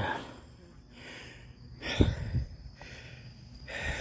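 A man breathing hard after doing chin-ups, in heavy breaths, with a brief knock about two seconds in.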